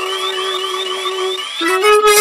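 A violin holds one long note over a pop backing track, while a synth sweeps up in pitch again and again, about five times a second. The note stops about a second and a half in, and the fuller music comes back in near the end.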